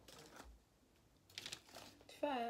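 Near silence broken by a few faint taps and rustles, a small cluster of them just past the middle, from hands and brush working wet plaster bandage over a wire frame.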